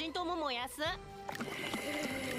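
Anime dialogue: a character speaking Japanese with wide swings in pitch for about a second, then steady background music.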